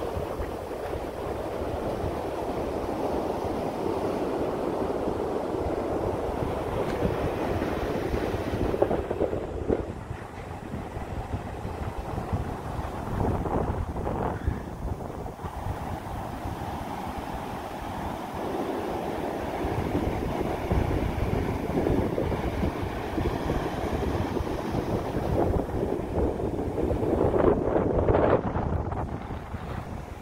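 Ocean surf washing up a sandy beach, swelling and easing as the waves come in, with wind buffeting the microphone.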